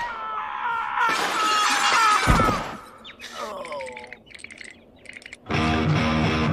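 Film-soundtrack music with a heavy crash a little over two seconds in, followed by a scatter of high tinkling like shattering glass. Loud rock music with electric guitar starts suddenly near the end.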